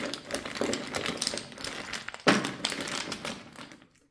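A hand rummages through rune tiles in a cloth drawstring bag: quick clicks of the tiles knocking together over the rustle of the fabric. There is one sharper click a little past halfway, and the sound fades away near the end.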